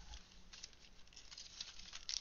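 Faint, scattered rustles and small ticks of paper tags and a cellophane package being handled.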